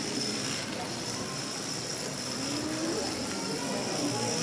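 Indistinct voices murmuring over a steady background hiss, with no clear words.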